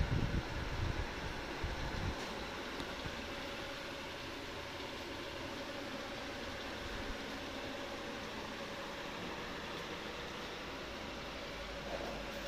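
Steady hum and hiss of a room air conditioner, with a faint steady tone over it. Some low thuds and rumbling in the first two seconds.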